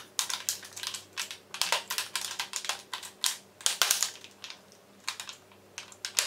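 Plastic lipstick tubes clicking against each other and a clear acrylic organizer tray as they are set in place, a quick irregular run of light clicks and clacks that thins out in the last couple of seconds.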